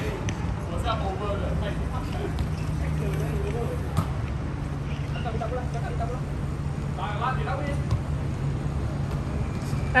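Futsal players calling out now and then over a steady low rumble, with one sharp knock of a ball being kicked about four seconds in.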